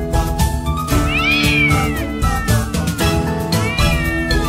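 A cat giving one long drawn-out meow about a second in, rising then sliding slowly down in pitch, and starting another near the end, over background music with a steady beat.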